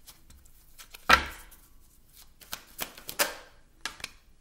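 A deck of tarot cards being shuffled by hand, a few short riffles and slaps of card on card. The loudest sound is a sharp knock about a second in.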